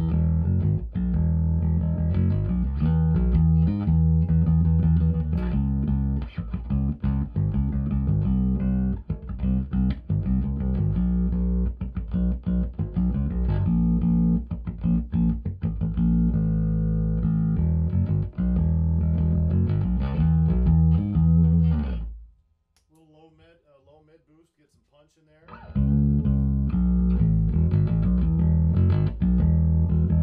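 Electric bass guitar played through a 2x12 bass cabinet with Beyma 12WR400 woofers, the amp's EQ set with a little treble and the upper mids around 2 to 2.5 kHz boosted to make the woofers growl. The playing stops about 22 seconds in for about three seconds, then starts again.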